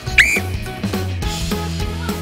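A short whistle blast just after the start, gliding quickly up in pitch, signalling the start of a footwork drill; background music with a steady bass line follows.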